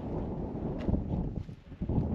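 Wind buffeting the microphone: an uneven low rumbling noise with a few faint knocks, dipping briefly near the end.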